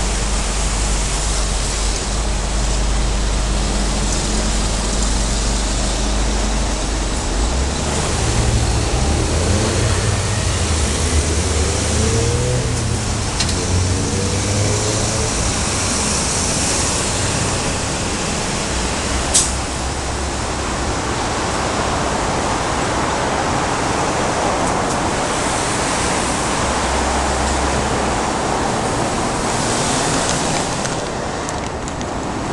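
Steady road-traffic noise from a busy multi-lane street, with a vehicle engine rising and falling in pitch for several seconds in the middle and a single sharp click about two-thirds of the way through.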